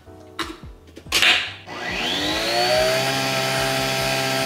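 Nespresso Vertuo capsule coffee machine starting a double espresso: a short noisy burst about a second in, then a motor whine that rises in pitch and settles into a steady hum as the capsule spins up to brew.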